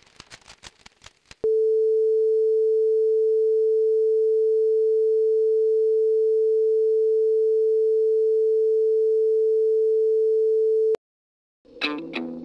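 A steady electronic test tone: one pure, unwavering pitch a little under 500 Hz, held loud for about nine and a half seconds and cutting off suddenly. Faint clicks come before it.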